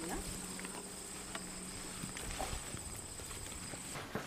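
Insects chirring in one steady, high-pitched, slightly pulsing drone, over a low steady hum. Both stop suddenly near the end.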